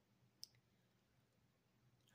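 Near silence: room tone, with a single short, faint click about half a second in.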